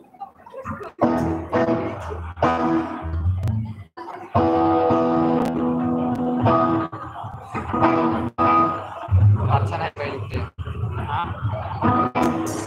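Live rock band heard through a PA: amplified electric guitar chords over bass, played in phrases broken by several sudden short stops.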